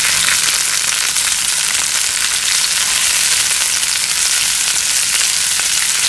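Sliced garlic, onion and tomato frying in hot oil in a pan: a steady sizzle with small crackles through it, the tomato softening in the heat.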